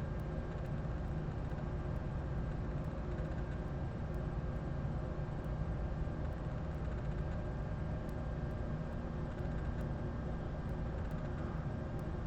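Steady low background hum and hiss with no distinct events, as of a fan or similar machine running in the room.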